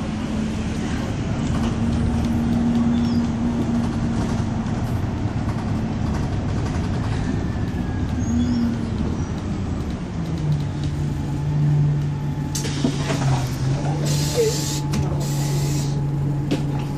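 Interior of a Stagecoach Enviro200 single-deck bus under way: the engine and road noise run steadily, then the engine note drops about ten seconds in as the bus slows. Near the end there are two sharp hisses of compressed air from the bus's air system.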